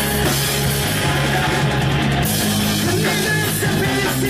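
Live rock band playing loudly: electric guitar, electric bass and drum kit.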